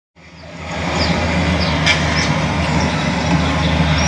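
A low, steady rumble in a television programme's soundtrack, heard through the TV's speakers; it fades in over the first half-second, with a few faint short high chirps above it.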